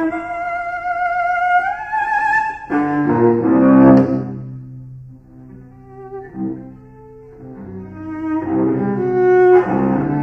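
Unaccompanied cello playing modern classical music. A high note held with vibrato slides upward, then loud low chords sound about three seconds in, fade to a quieter passage, and swell again near the end.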